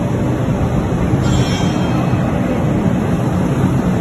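Digital knife cutting machine running with a steady, loud mechanical noise. A faint higher whine comes in briefly about a second in.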